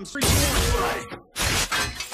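Film sound effects of glass shattering and crashing as an Iron Man armour gauntlet smashes in: a loud crash, a brief gap, then a second crash about a second and a half in.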